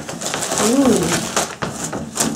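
Wrapping paper and a plastic bag rustling and crinkling as a present is torn open and pulled out. About three-quarters of a second in, a short voice sound rises and falls in pitch.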